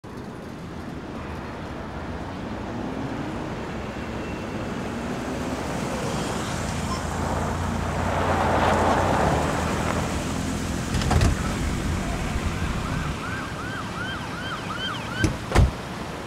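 A vehicle engine and tyres approaching and growing louder to a peak about halfway through, then a siren yelping in six or seven quick rising-and-falling sweeps near the end, followed by two sharp knocks.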